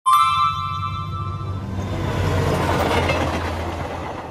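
Sound effects of an animated TV age-rating bumper: a bright bell-like chime that rings out for about a second and a half, over a steady rumble like a passing train that swells midway and starts to fade near the end.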